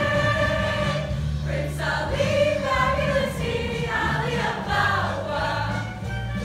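A mixed show choir singing in harmony, holding one long chord for about the first second and then moving on through the phrase.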